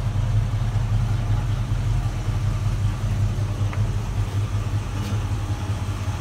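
A 1968 Ford Mustang's engine idling steadily, a low, even rumble.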